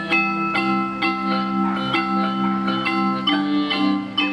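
Live instrumental music: an accordion holds sustained low chords while a keyboard plays a melody of short, bell-like struck notes, about two a second.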